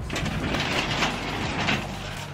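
Sectional garage door being lifted open by hand, its rollers running up the metal tracks in a continuous mechanical rumble.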